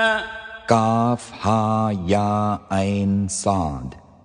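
A man's voice chanting Quran recitation in Arabic in melodic tajweed style. A held note fades out at the start; then, from under a second in, come several short sung phrases with gliding, wavering pitch, separated by brief pauses.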